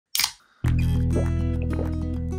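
An aluminium drink can's ring-pull snapped open with a short, sharp hiss. About half a second later, loud music with a heavy bass starts and carries on.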